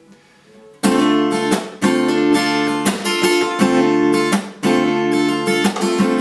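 Ibanez PF15ECE electro-acoustic guitar strummed on a D minor chord, starting about a second in: a quick strumming pattern of down- and upstrokes broken by percussive string-muting slaps, with the little finger lifted and put back on the strings between strokes to change the chord's sound.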